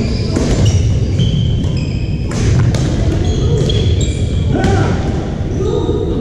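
Badminton rally in a large gym hall: a series of sharp racket strikes on the shuttlecock and short, high squeaks of sneakers on the hardwood floor, over the steady echoing rumble of the hall.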